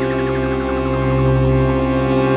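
Slow ambient music opening on accordion and synthesizer: a steady held chord under a fast pulsing run of high notes that steps downward, swelling slightly about a second in.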